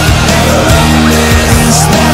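Rock music playing: an instrumental stretch with no singing.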